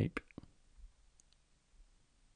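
The end of a spoken word, then a few quick sharp clicks at a computer, then a faint background with a couple of small high ticks a little over a second in.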